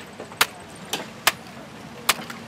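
Three sharp knocks and cracks, irregularly spaced, the first the loudest: a camcorder's plastic and metal casing struck and broken apart by hand for scrap.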